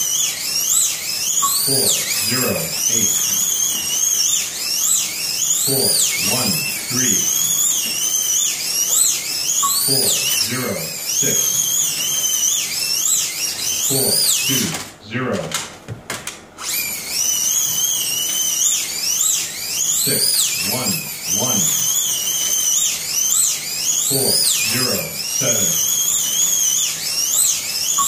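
Electric slot cars racing on a multi-lane track, their motors whining high, rising and falling over and over as they speed up and slow through the corners. The whine breaks off briefly about halfway through.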